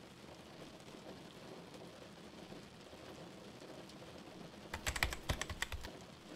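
Fast typing on a computer keyboard, a quick run of clicks lasting about a second near the end, over a faint steady hiss of rain.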